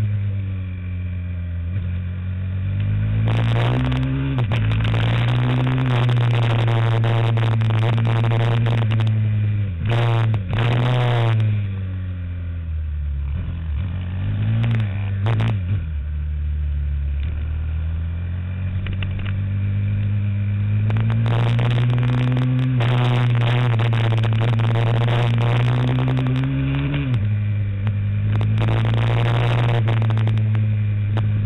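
Motorcycle engine heard onboard while lapping a track, held at high revs: the engine note climbs, dips sharply at gear changes, drops away while slowing for a corner about halfway through, then climbs again.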